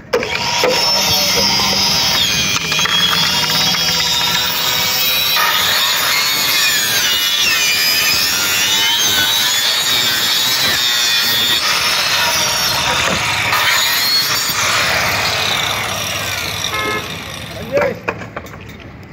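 Handheld electric cutter with a toothed circular blade starting up and sawing through a green bamboo pole. Its high motor whine rises and falls in pitch as the blade works through the cut, then winds down near the end.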